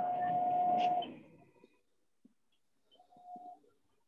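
Marker squeaking on a whiteboard as a word is written: a squeal with a steady pitch lasting about a second at the start, and a shorter, fainter one about three seconds in.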